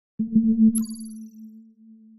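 Short electronic logo sting. A low synthesized tone pulses briefly and then holds, a bright high chime rings in just under a second in, and the low tone fades away slowly.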